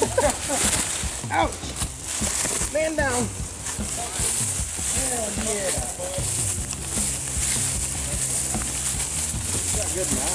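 Footsteps swishing through tall dry grass and brush, with short exclamations from several people's voices. A low steady hum comes in about halfway through.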